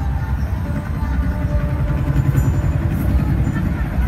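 Loud helicopter rotor sound played over an arena PA system, a deep, rapid fluttering chop, for a stage helicopter prop's entrance.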